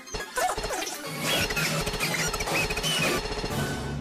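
Animated-film soundtrack: music with clattering, crashing sound effects and short squeaky glides in pitch through the middle.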